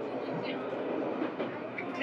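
Steady running noise of an HB-E300 series hybrid train rolling along the track, heard from inside the car, with a few faint clicks from the rails.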